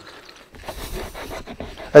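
Microfibre cloth scrubbing a leather car seat to lift dried paint, a soft, uneven rubbing noise that starts about half a second in.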